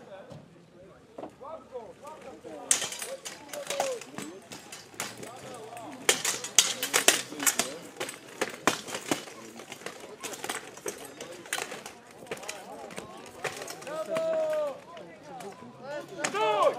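Steel swords and plate armour clashing as two armoured knights fight: a quick run of sharp metallic strikes and knocks starting about three seconds in, dense for several seconds and thinning out in the last few, over faint voices of onlookers.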